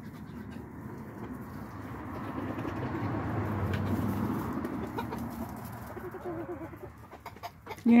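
Silkie chickens softly clucking, over a rush of noise that swells for a few seconds and then fades.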